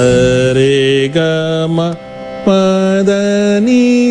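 Carnatic swara (sargam) practice exercise: a steady voice holds one note after another through the scale, about half a second to a second each. Near the end one long low note is followed by a step up.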